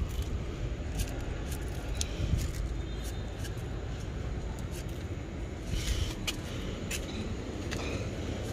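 Blue snail-bait granules shaken from a plastic bottle, ticking irregularly as they land on cactus pads and potting soil, over a steady low rumble.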